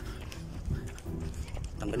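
Jogging footsteps thudding in a quick rhythm, with wind rumbling on the handheld phone's microphone as the runner moves.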